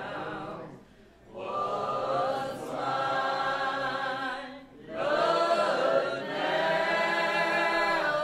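Church congregation singing a hymn together in long held lines, with short breaks about a second in and again near five seconds, fuller after the second break.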